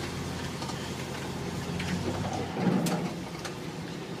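1969 International Harvester 1300 one-ton truck driving, heard from inside the cab: the engine runs with a steady low hum and road noise. About two and a half seconds in, the low hum drops away, followed by a brief rumble and a few light clicks.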